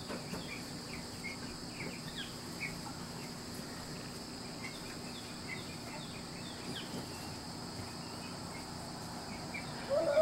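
Steady high-pitched insect trilling outdoors, with many short chirps scattered over it.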